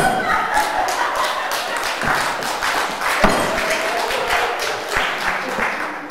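Theatre audience laughing and clapping, with a couple of heavy thumps; the loudest thump comes about three seconds in.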